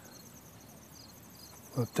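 Insects chirping in the surrounding grass: a faint, fast, steady pulsing high trill, with shorter repeated chirps a little lower in pitch.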